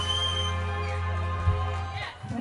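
A live rock band holding one final sustained chord, a deep bass note under keyboards and guitars, which cuts off at the very end. A high thin whistle rises over the chord in the first half second.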